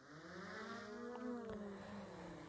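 DJI Mavic 2 Pro drone's motors and propellers spinning up for take-off: a faint hum that wavers up and then down in pitch.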